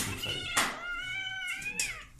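A white long-haired cat giving one long, drawn-out meow that drops in pitch at the end, crying out while it is held down for treatment.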